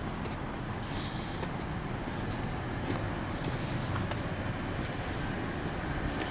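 Steady low rumble of urban outdoor background noise, mostly distant traffic, with a few faint scuffs.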